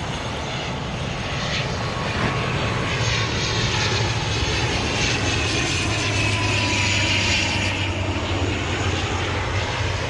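A fixed-wing aircraft flying low overhead, its engine noise building to its loudest about seven seconds in and easing off near the end, with a tone that slowly falls in pitch as it passes.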